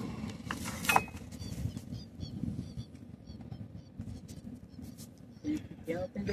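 A wet cast net and its rope being handled aboard a small boat: light knocks and rustles, a few of them in the first second, over a low wind rumble on the microphone, with faint high chirps in the middle.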